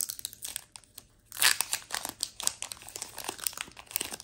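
Foil Pokémon booster pack wrapper crinkling in the hands as it is pulled and torn open at the top: a run of crackles with a short quiet gap about a second in.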